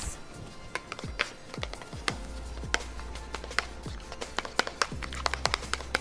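Irregular light clicks and taps of a whisk against a plastic tint bowl as hair colour and developer are mixed, over faint background music.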